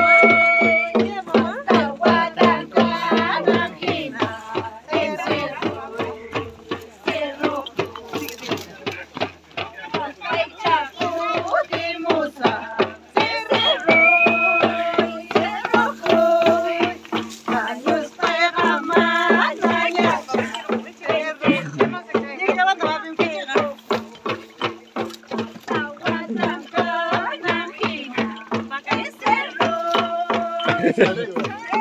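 Andean festival music: tinya hand drums beaten in a steady quick rhythm under a high, held melody line.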